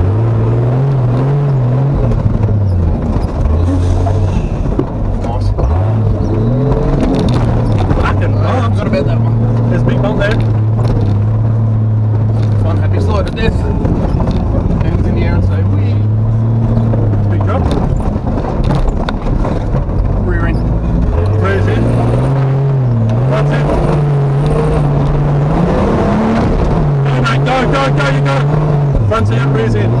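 Turbocharged Nissan GQ Patrol's TB42 straight-six engine working under load at low speed. Its note holds steady for long stretches and rises with the throttle about a second in and again for several seconds near the end.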